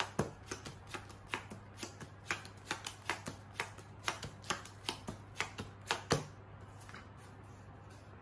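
Playing cards being dealt one at a time from a deck onto a table, each card landing with a short click, about three a second, stopping about six seconds in.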